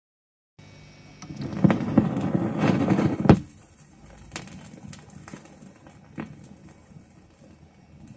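Phono stylus running in the lead-in groove of a mono LP, picked up by a stereo cartridge turned 45° to read only the record's lateral cut: surface noise with scattered clicks and pops, starting about half a second in. A louder crackly, rumbling stretch ends in a sharp pop a little past three seconds, then quieter hiss with a few single clicks.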